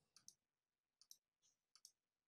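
Faint clicking of computer controls during desktop editing: three pairs of quick clicks, roughly one pair every three-quarters of a second.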